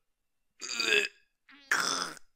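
A cartoon character's voice straining and grunting, as if thinking very hard: one short strained sound about half a second in, and another starting near the end.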